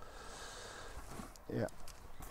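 Quiet, faint crackle and rustle of old orchid bark and sphagnum moss being picked off a Masdevallia's roots and sorted by hand, with a man's brief "yeah" near the end.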